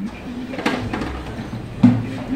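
A small soprano ukulele strummed lightly, once about half a second in and more strongly near the end, the strings ringing briefly after each strum.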